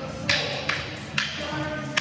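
Rattan Kali sticks striking each other in a partner drill: four sharp wooden clacks, roughly half a second apart.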